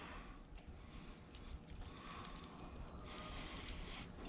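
Faint, scattered clinks of a steel chain and a metal gambrel hook being handled as a raccoon's hind leg is hooked onto the gambrel.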